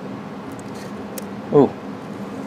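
A few faint, sharp metal clicks as gloved fingers work the connecting-rod cap loose from the crankshaft of an antique Briggs & Stratton 5S engine, over a steady low hum.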